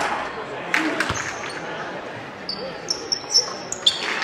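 A basketball knocking against the hoop and floor of a hardwood gym court about a second in, followed by a run of sneaker squeaks on the hardwood over a steady murmur of crowd voices in the echoing gym.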